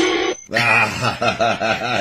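A person's voice with a fast warbling wobble in pitch, about six or seven wobbles a second, after a short loud sound at the very start.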